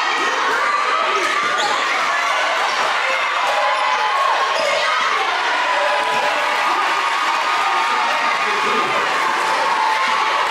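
Gymnasium crowd talking and shouting during live basketball play, with a basketball bouncing on the hardwood court.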